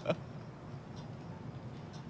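Quiet low hum with a couple of faint ticks, about a second in and near the end.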